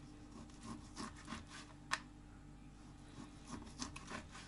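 Kitchen knife sawing through smoked pork loin on a plastic cutting board: faint slicing strokes, with one sharp tap near the middle.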